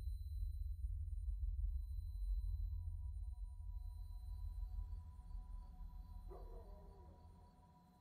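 Ambient sound-design drone between sections of the song: a low rumble with faint steady high tones that fades almost to silence near the end, with a brief pitched sound about six seconds in.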